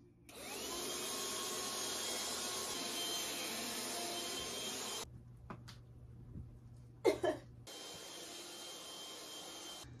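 Cordless handheld vacuum cleaner switched on, its motor spinning up to a steady whine while it is run over the floor of a guinea pig cage, then switched off about halfway through. A fainter steady running noise comes back for the last couple of seconds.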